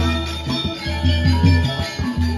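Balinese gamelan playing: ringing bronze metallophone tones over deep low notes struck a few times a second.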